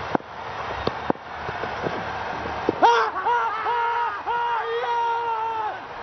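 A couple of sharp knocks, then from about halfway a loud, long, sustained shouting in drawn-out held notes: cricket fielders celebrating the fall of a wicket.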